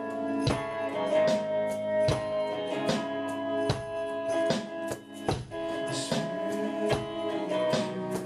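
Live band playing: held guitar chords over a steady drum beat, hits a little under a second apart, with a brief drop just before the middle.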